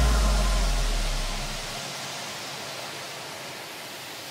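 A break in the electronic background music: a low bass note fades out over the first couple of seconds, leaving a steady hiss-like noise wash.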